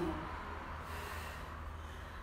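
A woman breathing hard through an exercise rep, a steady rush of breath with no words, over a low steady hum.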